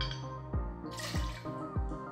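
Bourbon splashing into a glass mixing glass about a second in, over background music with a steady beat of about three beats every two seconds.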